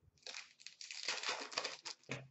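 Foil wrapper of a 2016-17 Fleer Showcase hockey card pack crinkling and tearing as it is ripped open. It makes a dense, crackly rustle for most of two seconds.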